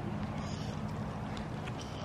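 Steady low rumble with a faint, even low hum underneath, without distinct hoofbeats or other sharp sounds.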